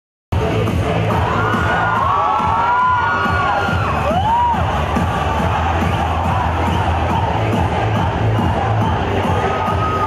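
Loud music for a group dance, with a crowd cheering and shouting over it; high rising-and-falling whoops stand out in the first few seconds and again near the end. The sound cuts in abruptly just after the start.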